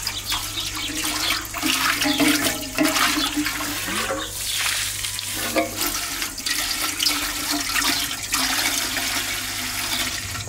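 Water from a garden hose pouring steadily into a large aluminium pot, splashing into the water already standing in it as the pot fills.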